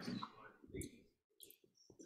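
A few light clicks from a laptop being operated, with faint, quiet speech underneath.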